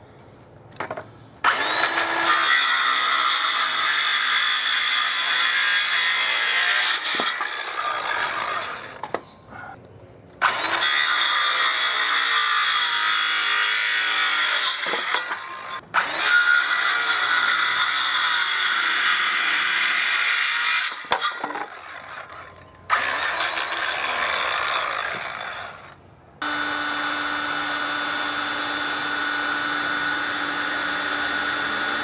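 Electric hand planer shaving a timber board in four passes, each starting with a high motor whine and winding down between passes. Near the end a cordless drill runs steadily.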